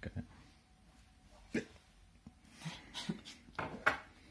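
A few brief, wordless vocal sounds from a person, one about a second and a half in and a short cluster near the end.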